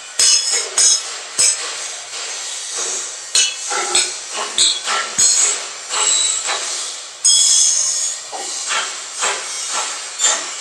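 Irregular hammer blows and metallic clanks on a sheet-steel concrete mixer drum, each with a short high ring. About seven seconds in comes a longer harsh metallic noise of under a second.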